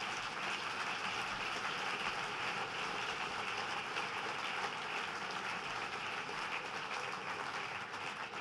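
A large seated audience applauding: steady, even clapping from many hands that eases off near the end.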